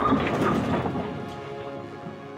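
Bowling strike sound effect: a ball crashing into pins, a loud crash at the start that rumbles and fades away over about a second and a half, over soft background music.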